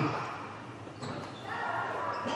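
A volleyball struck hard on a serve at the start, a softer hit about a second later, then players' voices calling out, all echoing in a large sports hall.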